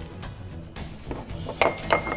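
Two light clinks of small ceramic bowls knocking together near the end, over quiet background music.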